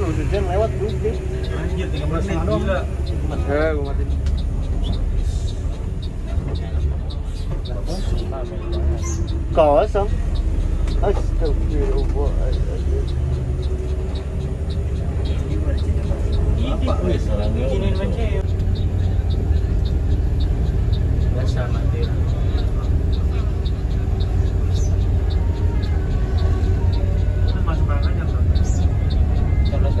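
Inside the cabin of a moving Mercedes-Benz OH 1526 NG tour bus: the engine gives a steady low rumble, with a steady droning tone through much of the middle. Indistinct passenger voices come in now and then: near the start, about ten seconds in, and again a few seconds later.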